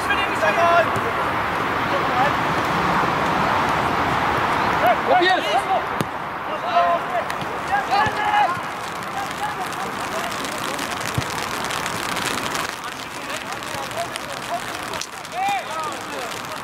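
Footballers' short shouts and calls across the pitch, scattered over steady background noise.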